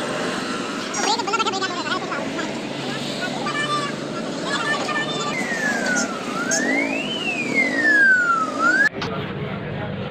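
Busy street sound: background voices and traffic. In the second half a single high tone slides down and up twice, like a siren, and stops abruptly near the end.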